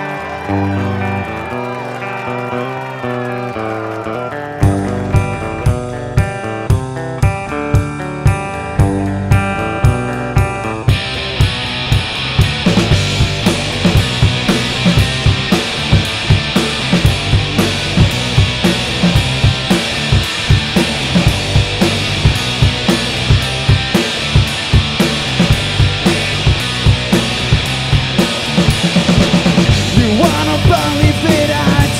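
Rock band playing an instrumental intro on electric guitars and drum kit. A guitar riff plays alone at first, the drums come in with a steady beat about four and a half seconds in, and from about eleven seconds the full band plays louder and denser.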